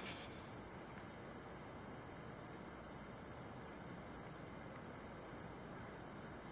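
High-pitched insect trill, a steady and rapid even pulsing that goes on without a break. It comes from an unseen insect in the surroundings, not from the trig in view, which is a female and does not sing.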